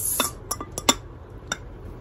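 Glass tumbler being handled by its bear-shaped lid: about five sharp clicks and clinks, spread over the first second and a half.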